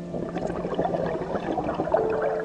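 Scuba regulator exhaust bubbles heard underwater: a diver's exhaled breath bubbling out in a dense, crackling burble.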